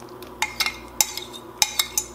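Metal spoon scraping and clinking against a glass measuring cup as thick gravy is scraped out of it, a series of sharp, ringing clinks.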